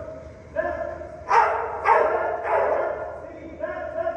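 A dog barking during an agility run, three sharp barks in quick succession around the middle, with a person's voice calling out.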